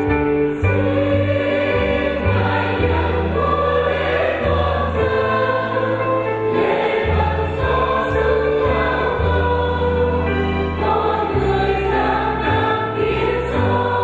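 Church choir singing a hymn, over an accompanying instrument that holds long, steady bass notes which change every second or two.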